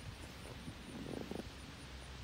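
Wind buffeting the microphone outdoors, an uneven low rumble, with a brief faint pitched sound just after a second in.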